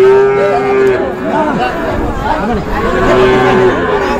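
Cattle mooing twice: a long call in the first second, the loudest moment, then a shorter one about three seconds in.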